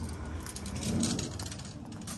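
Faint light metallic rattling and jingling: a hand-held steel tape measure jostled while being carried, over a low steady hum.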